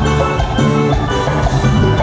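Live band playing dance music loudly, with a steady beat of drums and bass under held melody notes.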